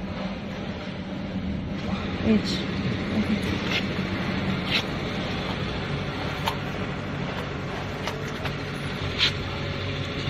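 A steady mechanical hum in the background, with a few light metallic clicks as a threaded circular connector is handled and fitted on a plasma power supply's panel.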